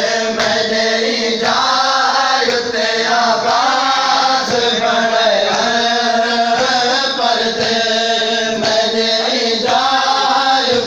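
Men chanting a noha, a Shia mourning lament, with sharp chest-beating strikes of matam keeping time about once a second.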